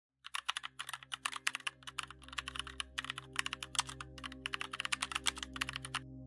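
Keyboard typing sound effect: quick runs of clicks with short pauses between them, stopping suddenly at the end, over a soft, sustained ambient music drone.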